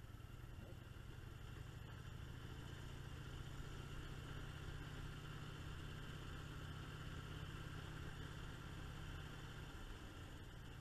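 Motorcycle engine running at a steady cruise with a low, even note. It eases off just before the end.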